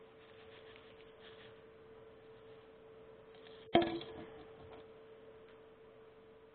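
A steady, faint hum with one sharp knock a little over halfway through that rings briefly before dying away.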